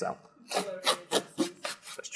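The pull-to-open tear strip of an express post envelope being ripped open, in a quick series of short tearing strokes starting about half a second in.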